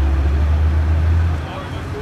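Low rumble of a heavy vehicle's engine running, which cuts off about one and a half seconds in, under the voices of a crowd.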